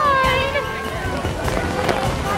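A young girl crying, one long wail that falls in pitch over the first second, over the steady hiss of heavy rain.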